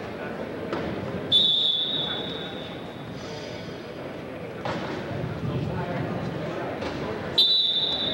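Referee's whistle blown twice, about six seconds apart, each a short shrill blast over the murmur of a gym crowd: the whistles stop the wrestlers' action on the mat and then restart them on their feet.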